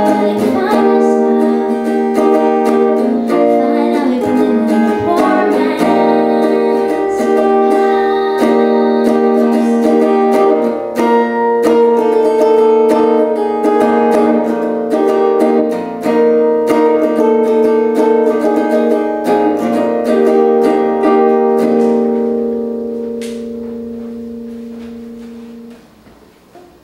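Hollow-body archtop guitar played alone, with chords and single notes. Near the end a final chord rings and fades away over about four seconds.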